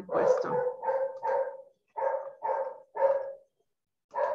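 A dog barking repeatedly over the video-call audio: a run of about six short barks, roughly two a second.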